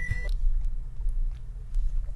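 Steady low rumble of background noise on the video-call audio, with a few faint ticks.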